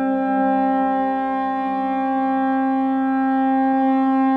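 Minimal electronic synthesizer music: a held chord of sustained, unchanging electronic tones, with one inner tone fading out about halfway through.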